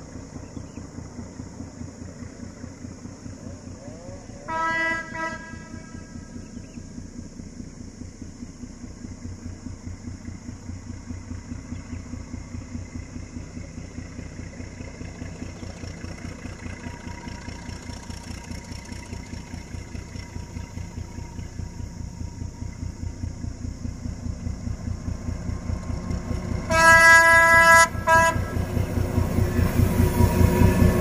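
Vietnamese D12E diesel locomotive approaching with a short passenger train, its engine throbbing and growing steadily louder. Its horn sounds a short multi-tone blast about five seconds in, then a longer, louder blast near the end followed by a brief toot.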